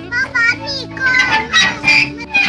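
A young girl talking in Thai in a high voice, several short phrases, over background music with steady held notes.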